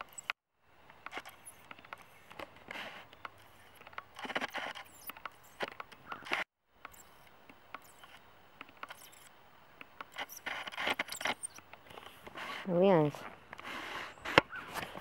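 Crackling and rustling of footsteps and handling on dry leaves and twigs, with scattered sharp clicks. A short, loud call with wavering pitch stands out near the end.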